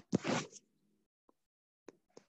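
Stylus tapping on a tablet's glass screen while handwriting: a few sharp clicks, with a short rasping scrape near the start.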